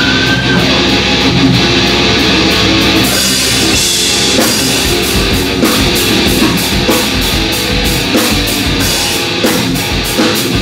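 Live heavy rock band playing: electric guitars hold chords, then the drum kit crashes in about three seconds in and the full band plays on with a steady beat.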